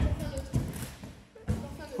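Dull thumps of feet and body landing on gymnastics crash mats and a wooden gym floor: one at the very start, another about one and a half seconds in, with lighter knocks between.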